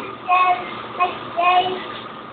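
A young child singing, three short sung syllables with held notes.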